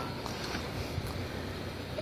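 Diesel engine of a compact tractor running steadily at a low, even level.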